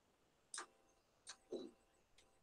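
Near silence with a couple of faint clicks, about half a second in and just after a second, then a faint, short spoken "sí" at about a second and a half.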